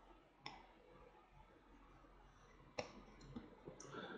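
About four faint, sharp clicks from a computer mouse and keyboard over near-silent room tone, the loudest a little before the end.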